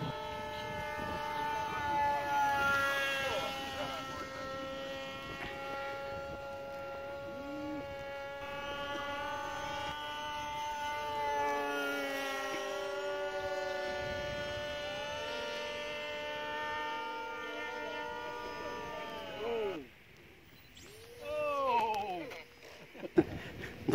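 Electric motor and propeller of a foam radio-controlled F-22 model jet, a steady whine that rises and falls in pitch with the throttle in flight, cutting out about two seconds before the end as the model comes in to land.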